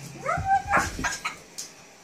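Bull terrier puppy giving a short yelp that rises and then holds its pitch, followed by a few quick sharp sounds, during rough play between two puppies.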